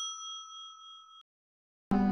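A single bell-like ding sound effect, struck just before and ringing with several clear high tones that fade away a little over a second in.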